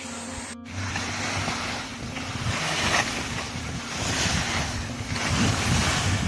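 Downhill skis sliding over a groomed snow slope: a rushing hiss over a low rumble that swells and eases repeatedly, with wind buffeting the microphone. It starts after a brief dropout about half a second in.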